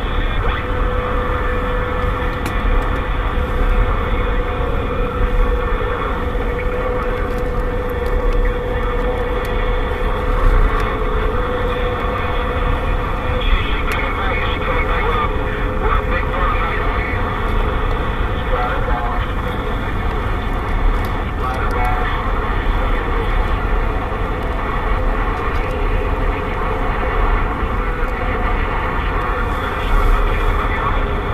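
CB radio receiver on AM hissing with heavy band noise and static, with faint, unintelligible distant voices mixed in; the band is too noisy for a clear contact. A faint steady whistle runs through the first dozen seconds, over the low rumble of the vehicle driving.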